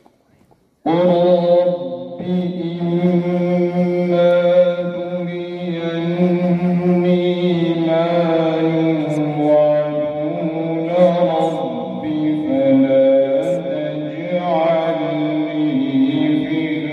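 A male qari's solo Quran recitation in slow, melodic tartil style, with long held notes, beginning about a second in after a brief silence.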